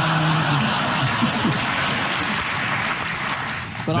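Studio audience applauding and laughing, easing off just before the end.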